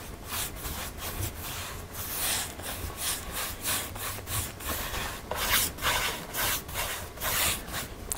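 Paintbrush stroking paste finishing wax over a painted wooden plank tabletop: a quick run of bristle-on-wood rubbing strokes, about three a second, starting about half a second in.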